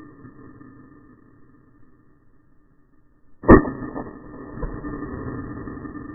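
A single rifle shot from a bolt-action rifle about three and a half seconds in, loud and sharp, its report echoing and dying away slowly, with a softer knock about a second after it.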